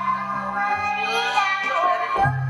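Children singing a song with musical accompaniment, the voices holding long notes.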